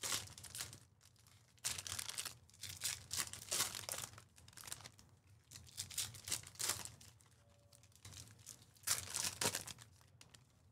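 Foil trading-card pack wrappers crinkling and tearing as they are ripped open by hand, in several bursts: at the start, from about two to four seconds in, around six seconds, and near nine seconds.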